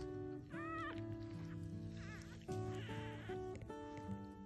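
Background music, over which newborn border collie puppies squeak briefly twice, about half a second in and again about two seconds in.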